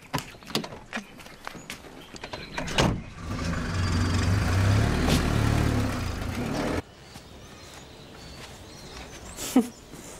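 Clicks and knocks, then a thump about three seconds in, followed by a car engine running with a steady low hum as the vehicle moves off; the engine sound cuts off abruptly near seven seconds, leaving quiet room tone with a single click near the end.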